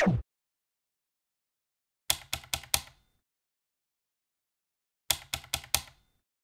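Two quick runs of four sharp clicks, about three seconds apart.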